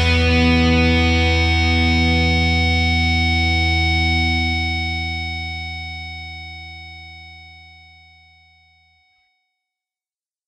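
The last chord of a rock song, held on distorted electric guitar with a slow wobble, ringing for about four seconds and then fading out to nothing.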